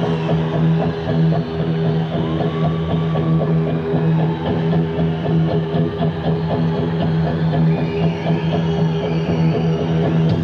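Live rock band music: a held low keyboard-like chord with a fast, even pulse over it. The full band comes in just after.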